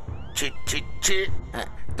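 A cartoon ghost character's voice in a few short syllables, one after another.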